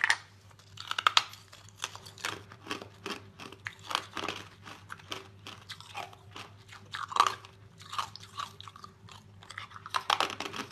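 Ice being bitten and chewed close to the mouth: sharp crunches, loudest in the first second or so, then a steady run of smaller crackling crunches.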